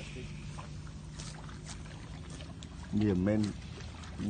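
A Vietnamese-speaking voice, loudest briefly about three seconds in, over a steady low hum.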